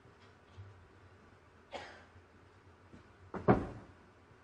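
A person coughing twice in a hushed arena: one cough a little under two seconds in, then a louder double cough near the end.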